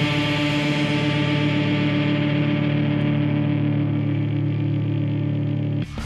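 A rock band's final chord held and ringing steadily on electric guitar and bass, its brightness slowly fading. Near the end it cuts off abruptly into the start of a TV channel's ident music, with a rising sweep.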